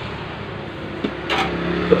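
Steady background hiss like a room fan, with a short crinkle of transfer tape being handled about a second and a half in.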